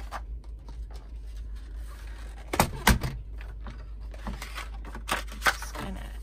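Knocks and light clatter on a tabletop as a slide paper trimmer is set down, the loudest two close together about two and a half to three seconds in. Paper rustles as a sheet is slid into place on the trimmer.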